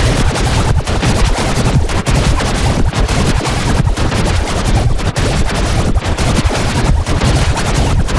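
Harsh, heavily distorted music: a loud, dense crackling din with rapid stuttering clicks and no clear tune, which starts abruptly after a brief dropout.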